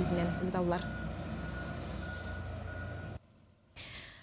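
Steady engine and road noise from a wheel loader driving along a dirt road with a truck behind it, cutting off abruptly about three seconds in.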